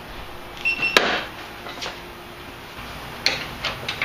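Hard plastic headlight assembly knocking and clicking as it is pushed home into the front of a Jeep Grand Cherokee, with a short squeak of plastic rubbing and then a sharp snap about a second in, followed by lighter plastic clicks near the end.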